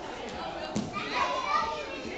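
Young children's voices and play noise in a large gym hall, with a sharp knock about three-quarters of a second in and a high child's voice right after it.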